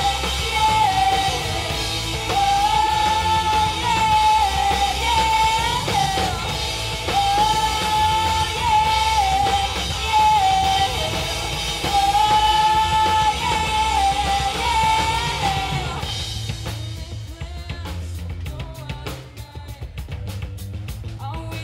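A live rock band playing: a female singer's lead vocal over electric guitars and a drum kit. The singing stops about sixteen seconds in, leaving the guitars and drums playing.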